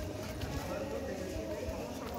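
Indistinct voices of people talking in the background, over irregular low thumps.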